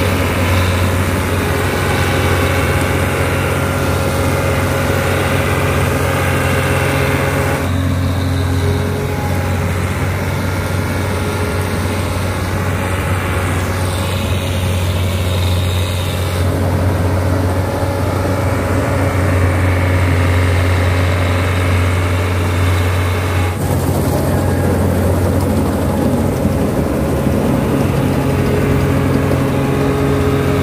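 CLAAS combine harvester running under load as it cuts and threshes oats: a loud, steady engine drone with the hum of the threshing machinery. Its tone shifts abruptly a few times, at about 8, 16 and 24 seconds.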